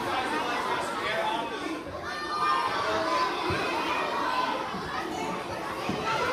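Many children talking and calling out at once, a steady crowd chatter in a large hall.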